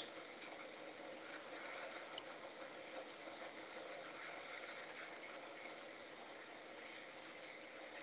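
Faint, steady hiss of background noise on an open microphone line of an online meeting, with no other distinct sound.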